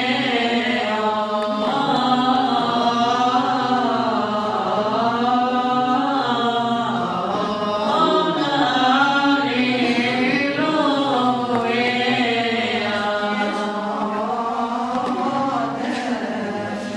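Byzantine chant in an Orthodox church service: voices singing a slow, ornamented melody that bends up and down over a steady held drone note (ison).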